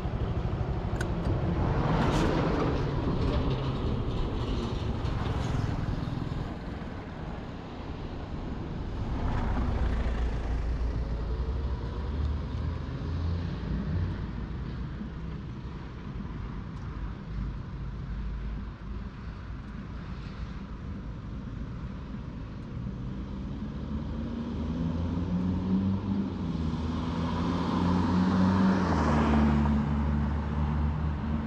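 Motorbike engine running on the move, its pitch stepping up and down, over road and wind noise. The noise swells louder about two, ten and twenty-eight seconds in.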